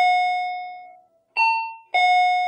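Two-tone ding-dong doorbell chime. A lower note rings out and fades, then another high-then-low ding-dong sounds near the end.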